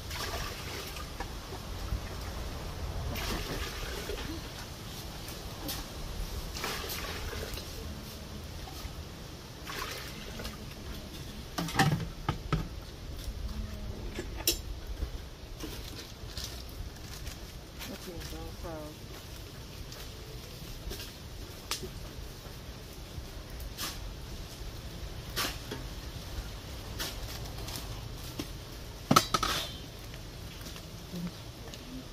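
Water poured from a plastic bowl into an aluminium cooking pot, with sloshing, then scattered knocks and clinks of pots and utensils, with a loud clatter about twelve seconds in and another near the end.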